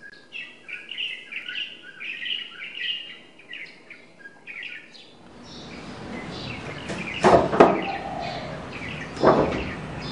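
Small birds chirping in quick, short calls for about the first five seconds. A louder steady background noise then comes in, with two quick sharp knocks about seven seconds in and another near the end.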